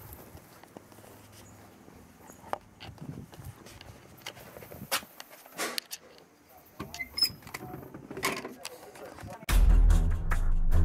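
Scattered faint knocks, clicks and rustling from footsteps and handling, then loud background music with a steady beat cuts in suddenly just before the end.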